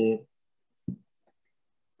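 A man's voice trails off at the end of a word, then a pause of near-total silence follows, broken by one short faint sound about a second in.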